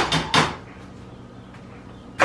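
Two sharp metal knocks in the first half second: a metal strainer being tapped against the rim of a stainless steel pot to knock out drained diced tomatoes. Quiet room tone follows.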